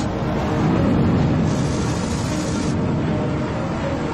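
Cartoon spaceship thrusters firing at full emergency power: a dense, steady rumble, with a hiss laid over it for about a second midway that cuts off suddenly.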